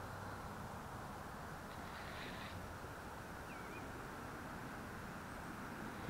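Faint, steady outdoor background hiss with one short, high bird chirp a little past the middle.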